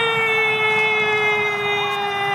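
An Indonesian football commentator's long drawn-out goal cry, one sustained vowel held for several seconds and sliding slowly down in pitch, as a goal is scored.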